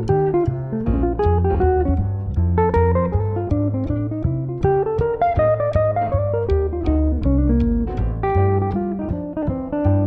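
Archtop electric jazz guitar playing a flowing line of plucked notes, with a walking bass line of low notes moving about every half second underneath.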